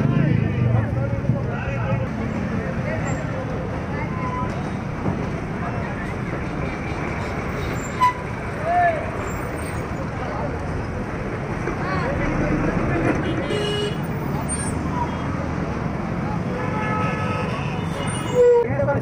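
Busy street crowd: many voices talking at once over vehicle engines and traffic noise, with short horn toots now and then.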